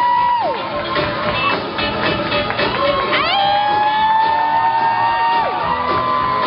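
Live rockabilly band playing, electric guitar among it, while the audience cheers and whoops.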